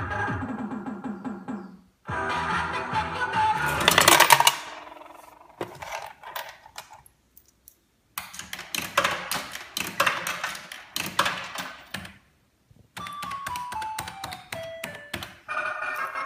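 Coin-operated Mario-style slot machine playing its electronic jingles and beeping sound effects in several bursts with short pauses, mixed with clicks. Near the end comes a run of short beeps stepping down in pitch one after another.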